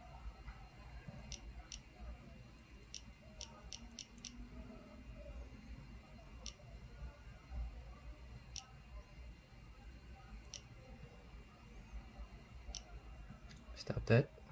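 Faint short ticks, about eleven at irregular intervals and bunched near the middle, as menu buttons are tapped on a 3D-printer controller's touchscreen. A low, even hum lies underneath.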